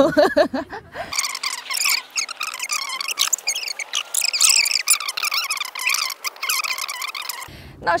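A dense chorus of high chirping and chattering animal calls, with no low end, starting about a second in and cutting off abruptly near the end.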